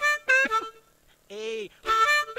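Harmonica played into a microphone in short blues phrases: a few quick notes, a pause, then a bent note and a new phrase starting near the end.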